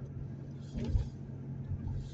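Car engine and tyre noise droning steadily inside the cabin while driving on a wet road. A brief hiss and a low thump come just under a second in.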